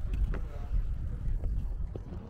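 Low rumble of wind buffeting the microphone, with faint voices of people in the background.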